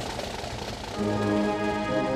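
Open-air background noise, then about a second in a military brass band strikes up an anthem with loud, sustained chords.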